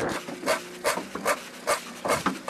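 Knife chopping raw eel flesh on a wooden cutting board: four crisp, evenly spaced strokes, a sagak-sagak sound that is the sign of very fresh eel.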